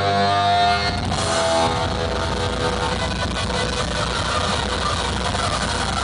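A heavy metal band's amplified guitar chord rings out for about a second and breaks off, then a steady roar of crowd noise, cheering and clapping, fills the rest over a low amplifier hum.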